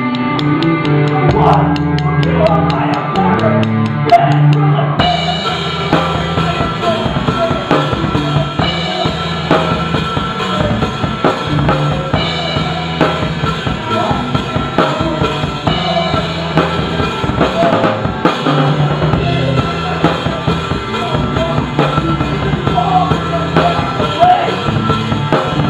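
A rock band playing live, the drum kit loudest with steady beats over sustained low notes and guitar.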